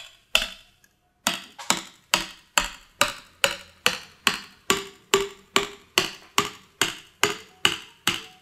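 A hammer striking the head of a sharpened stainless steel tube, driving it down through the husk of a green coconut to open it. Sharp knocks come in a steady run of about two a second, after a short pause near the start.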